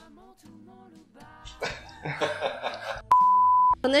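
Faint music, then near the end a loud, steady, single-pitch bleep tone of the kind used to censor a word, lasting well under a second and cutting off abruptly.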